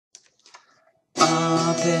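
A guitar chord struck suddenly about a second in and left ringing, after a few faint clicks. A man's voice starts singing over it near the end.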